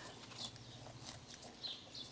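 Faint, crisp rips of a cow tearing and cropping grass at irregular intervals, with a few faint bird chirps.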